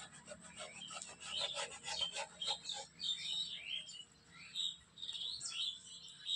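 Birds chirping in short, repeated calls, starting with a quick run of rapid chirps over the first three seconds.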